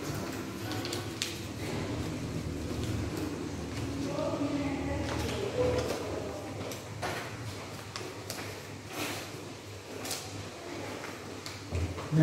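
Paper being folded and creased by hand on a tabletop: soft rustling with a few short, sharp crinkles, over a steady low hum.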